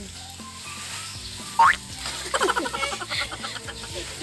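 A toddler's short, high, rising squeal, then a run of pulsing, falling laughter.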